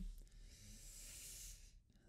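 Near silence: only a faint hiss, which drops away just before the end.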